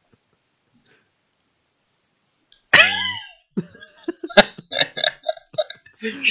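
Near silence for the first two and a half seconds, then a loud vocal outburst from a person, followed by a run of short bursts of laughter, several a second.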